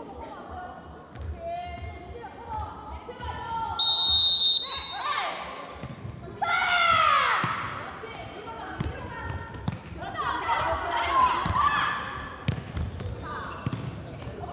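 A referee's whistle blast of under a second about four seconds in, the loudest sound, followed by the jokgu ball being kicked and bouncing on the indoor court floor in a string of sharp knocks during a rally, with players shouting.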